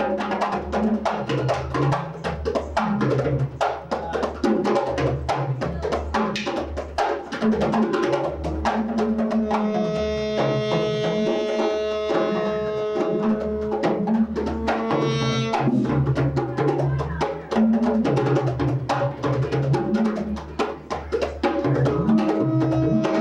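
Live hand-drum groove, fast and dense djembe and percussion strikes. From about ten seconds in, a saxophone comes in over the drums, holding long notes for about five seconds.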